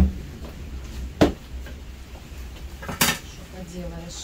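Kitchen pots and dishes clanking as they are set down and moved about, three sharp clanks with a short metallic ring: one at the start, one just over a second in, and one about three seconds in.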